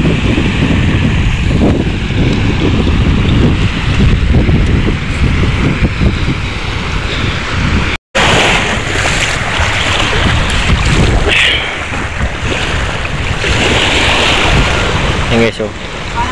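Wind buffeting the microphone over small waves washing onto a pebble shore. It cuts out for an instant about halfway, then water splashes as someone wades through the shallows.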